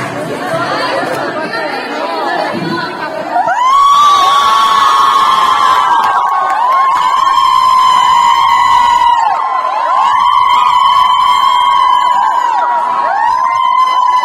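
Audience cheering and shouting. About three and a half seconds in, a loud chorus of high-pitched voices rises and is held in long stretches, with short breaks.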